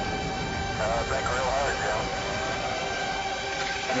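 A person's wavering voice briefly about a second in, over steady background noise with a few held tones.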